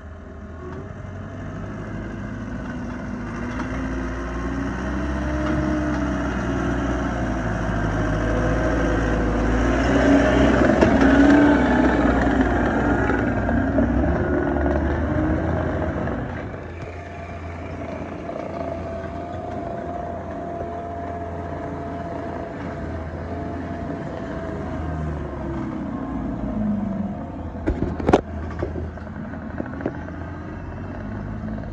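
Compact track loader's diesel engine running under load, its pitch rising and falling as it works. The engine grows louder toward about ten seconds in, drops back at a cut after about sixteen seconds, and there is a sharp metallic knock near the end.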